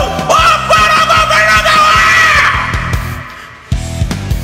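A man belting one long, held high note over a loud rock backing track with a driving drum beat. Near the end the backing drops away briefly, then drums and electric guitar crash back in.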